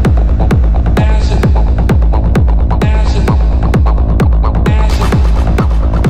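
Techno music: a steady four-on-the-floor kick drum at about two beats a second over a droning bass, with a higher electronic pattern coming back about every two seconds.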